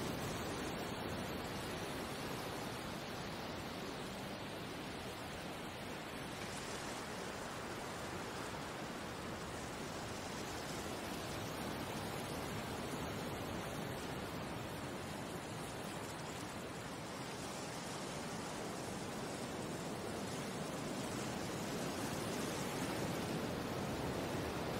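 Sea waves: a steady, soft wash of surf that swells and eases slowly over several seconds.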